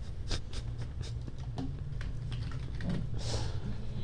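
Light, irregular tapping on a laptop keyboard over a steady low room hum, with a short breathy hiss a little after three seconds in.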